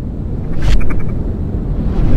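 Intro sound effects: a loud, deep rumble throughout, with a whoosh about two-thirds of a second in, a few quick ticks right after it, and another whoosh near the end.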